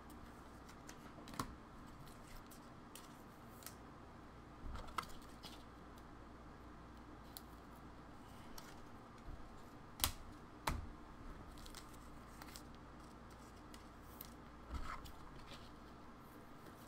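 Faint, scattered clicks and taps of a computer keyboard and mouse, with a sharper pair of clicks about ten seconds in, over a faint steady hum.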